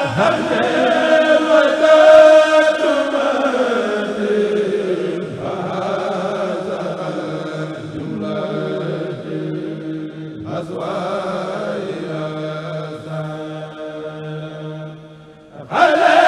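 A Mouride khassida chanted in unison by a kurel of men, amplified through microphones, in long held notes. The melody slides downward over the first few seconds, and the voices grow quieter near the end.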